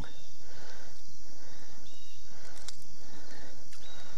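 Steady outdoor background noise, an even high hiss over a low rumble, with a couple of faint short clicks near the end.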